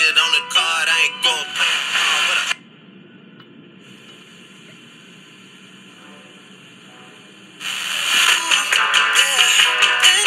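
Small AVI Radio KST-50 FM receiver playing a station's music through its speaker. About two and a half seconds in, the music cuts out to a few seconds of faint hiss while the set is tuned between stations, and another station's music comes in a little before the end.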